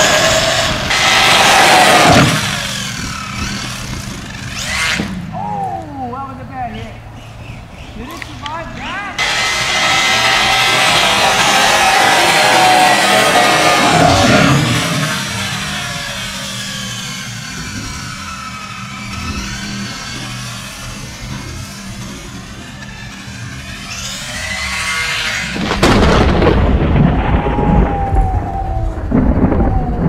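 Background music with a singing voice and a steady bass line.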